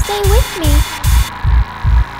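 Hard-techno track at 150 BPM: a heavy kick drum on every beat, about two and a half a second, with a gliding, pitched line over it. A hissing noise layer runs until a little past a second in, then cuts off.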